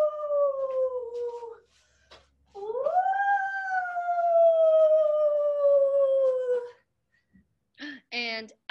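A woman's voice making a long "ooooh" wind sound, twice. The first call tails off about a second and a half in. The second rises at about two and a half seconds and then slowly falls in pitch for about four seconds.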